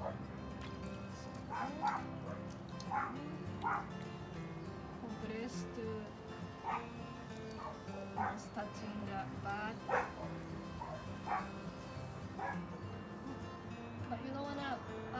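A dog barking and yipping at irregular intervals, about one call a second, some of them rising and falling whines, over a steady low hum.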